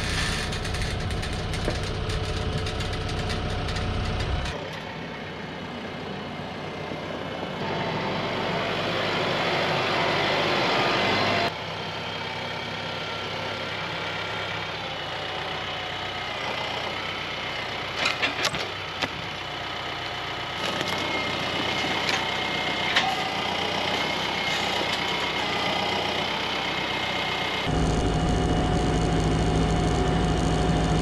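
TYM 754 tractor's diesel engine running while its front-loader grapple lifts and carries a large log; the engine note and level shift abruptly several times. A few sharp knocks come about midway.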